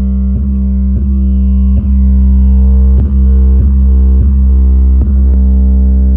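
Loud, bass-heavy music with a deep sustained low end and a steady beat about every two-thirds of a second, played through floor-standing home theatre tower speakers with large woofers.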